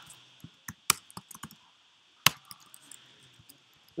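Computer keyboard keys clicking in an irregular run of keystrokes while code is edited, with two louder strikes about a second in and just after two seconds and fainter taps between.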